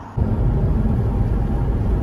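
Low, steady rumble of a car on the move, engine and road noise heard from inside the cabin, cutting in abruptly a moment in.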